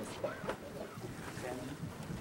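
Wind buffeting an outdoor microphone, with a brief snatch of a man's voice near the start.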